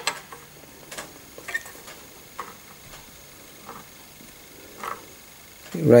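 A steel string-action ruler tapping and clicking against a guitar's strings and frets as it is set in place: one sharp click at the start, then a few faint scattered ticks.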